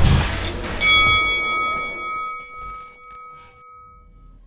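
Logo sting of an outro: a short rush of noise, then a single bright bell-like chime struck about a second in, with several ringing tones that slowly die away.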